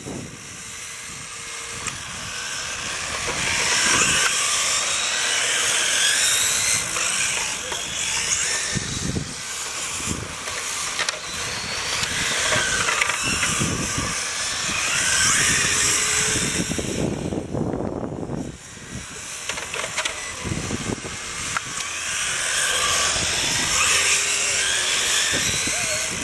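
Radio-controlled model cars racing, their motors whining in pitch that rises and falls as they speed up, slow for turns and pass by, several at once. The sound swells and fades every few seconds, with a short lull about two-thirds of the way through.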